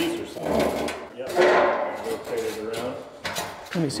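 Metal clanks and scrapes from a welded steel support frame for a gun safe being shifted by hand, with several sharp knocks.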